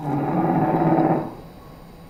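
A low, drawn-out growl sound effect, starting sharply and lasting just over a second before fading away.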